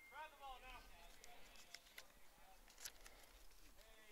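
Near silence with faint, distant shouted chatter from players on the field: a drawn-out call in the first second and another starting near the end, with a few light clicks between.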